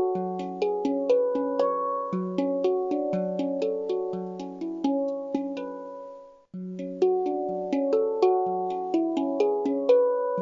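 Handpan being played: struck, ringing notes at about two a second in a slow, even melody. The notes fade and break off for a moment a little past halfway, then the tune starts again.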